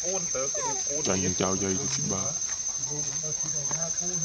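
Insects droning steadily at one high pitch, with people talking in the background.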